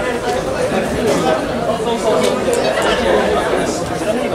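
Chatter of several people talking over one another in a large hall.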